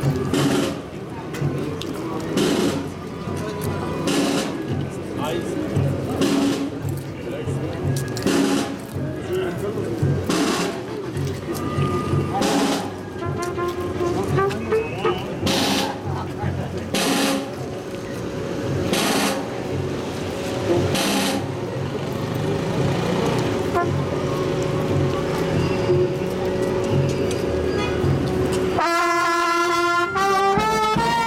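Crowd voices with a sharp crash about every two seconds, then a long steady tone. About a second before the end, a street brass band of trumpets, trombones and clarinets starts playing a march.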